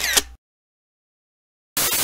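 TV-static transition sound effect: a short burst of white-noise hiss that cuts off suddenly into dead silence, then a second static hiss starts near the end.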